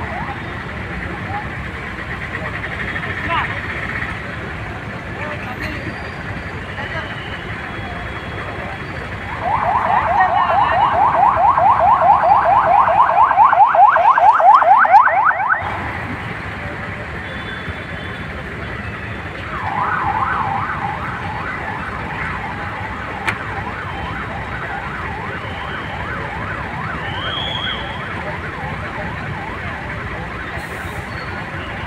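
Convoy escort vehicle's electronic siren warbling rapidly over steady road-traffic noise. It comes in loud at about a third of the way in and lasts about six seconds, then a fainter burst of the same siren follows a few seconds later.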